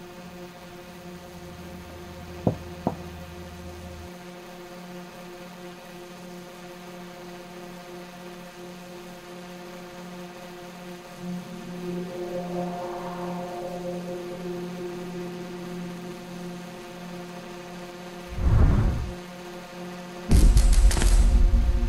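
Droning background music of steady held tones that swells in the middle, with two short clicks a few seconds in and a loud low boom just before the end.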